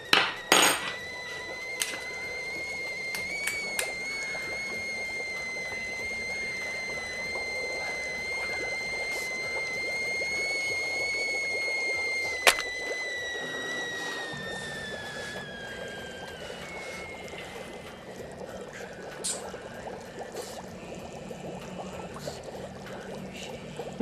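Liquid pouring steadily into a container, with a high ringing tone that creeps up in pitch, then sinks and fades out about two-thirds of the way through while the pouring goes on more quietly. A couple of sharp clinks, one right at the start and one about halfway.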